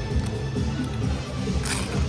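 Background music, with a short crisp crunch near the end as a kettle-style potato chip is bitten.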